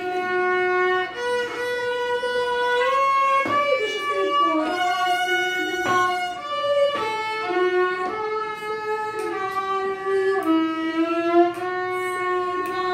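A student violinist playing a bowed melody on the violin in sustained notes, changing pitch about every second, with a few slides between notes.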